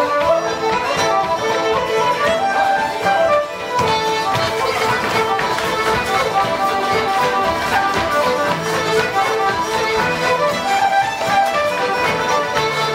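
Live Irish céilí band playing a traditional dance tune for set dancing, a fiddle to the fore, with accordion, in a steady, unbroken dance rhythm.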